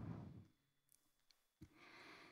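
Near silence: a pause in a spoken talk, with the last words fading out at the start and a single faint click about a second and a half in.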